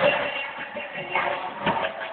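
Live arena concert sound recorded from within the audience: a dense, muffled mix of PA sound and crowd noise, with a couple of sharp hits in the second half.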